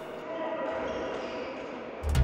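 Fairly quiet, reverberant ambience of a table tennis hall: balls being hit and bouncing on tables, with distant voices.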